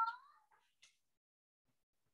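A cat meowing once: a single short call of about half a second, followed by a faint click.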